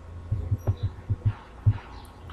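Steady low electrical hum with a run of about seven soft, irregular low thumps and a couple of faint clicks.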